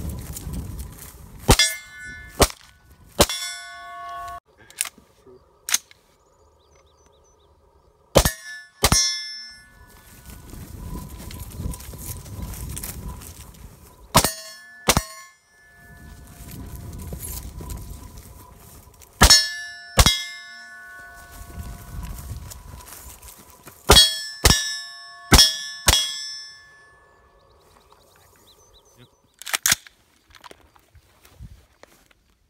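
AR-15-style rifle fired about fifteen times, in quick pairs and short strings, each shot followed by a brief metallic ring like a struck steel target. Between strings there is low rustling and rushing as the shooter moves through tall grass.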